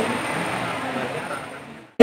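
Faint, distant speech over a microphone and PA in a large reverberant hall, under a steady background hiss. It fades out to silence near the end.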